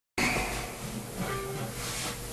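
A steady hiss of noise that starts suddenly just after the opening, loudest in the first moment, with a couple of faint short held notes in it.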